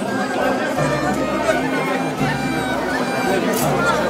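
A crowd of people talking over one another, with music mixed in underneath.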